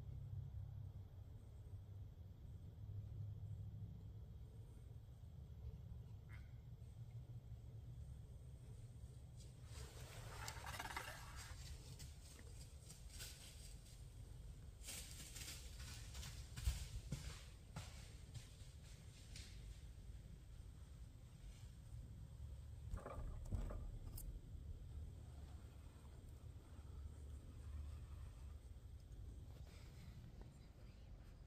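Faint rustling and crunching in dry fallen leaves under a steady low wind rumble, with louder clusters of crackles about ten, fifteen and twenty-three seconds in: white-tailed deer, a buck pushing a doe, moving through the leaf litter.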